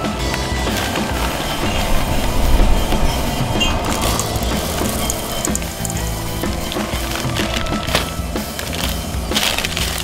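Background music with a steady beat, over semi-sweet chocolate chips rattling as they are poured into a silicone measuring cup and then tipped into a steel mixing bowl.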